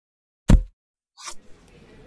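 A single sharp low thump about half a second in, dying away within a quarter of a second, followed by a brief hiss and then faint room tone.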